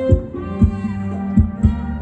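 Live band playing Thai ramwong dance music: a heavy kick-drum beat over a bass line, with held keyboard notes.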